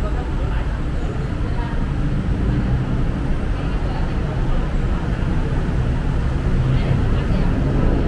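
Steady city road traffic from a busy junction below, a continuous low rumble of engines and tyres, with faint indistinct voices of passers-by.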